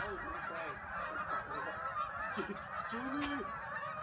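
A large flock of Canada geese honking in flight: a dense, continuous chorus of many overlapping honks, with a few lower, stronger calls standing out in the second half.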